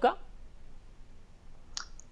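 A man's spoken word ends, then a pause with only faint background hiss and a single short click about three-quarters of the way through.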